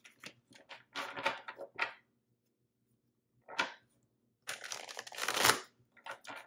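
A deck of tarot cards being shuffled by hand: bursts of papery flicking and rustling as the cards slide through each other, stopping briefly in the middle, then a longer, louder run of shuffling near the end.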